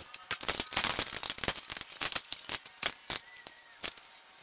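A fast, irregular run of small metallic clicks and taps as fittings on the steel lid of a 10-gallon paint-style pressure pot are handled and fitted, thinning out toward the end.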